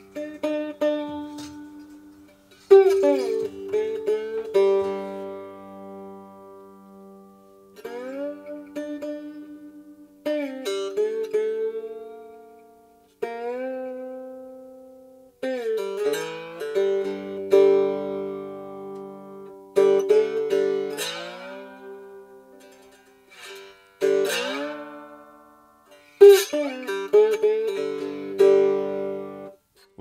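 A homemade cigar box guitar played unplugged: phrases of plucked notes that ring and die away, with pitch glides at the starts of notes.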